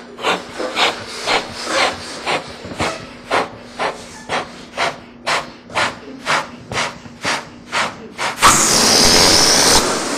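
A person blowing up a rubber balloon in short, even, bellows-style puffs, about two a second. Near the end the air rushes back out of the balloon in a loud, steady hiss as it deflates.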